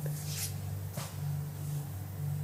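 A low steady hum in a small room, with two faint brief rustles about half a second and one second in.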